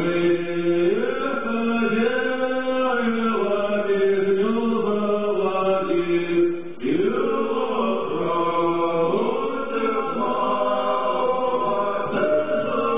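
Vocal music: voices singing a slow, chant-like melody in long held notes, with a short pause about seven seconds in before the next phrase starts.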